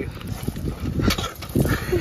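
Large dogs scuffling and snuffling close to the microphone as a man roughhouses with them, with irregular knocks and rustles of handling.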